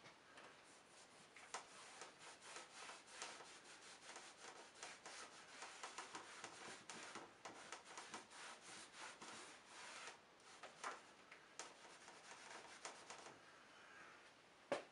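A rag dipped in mineral spirits rubbed over a thinly painted, toned canvas in quick, short strokes, wiping paint out to lighten the sky. The rubbing is faint and scratchy, at several strokes a second, with a short pause about ten seconds in.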